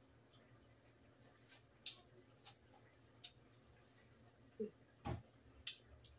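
Near-silent room with a handful of short, sharp smacks and clicks from the mouth while tasting sauce off a spoon, one of them, about five seconds in, with a soft low thump.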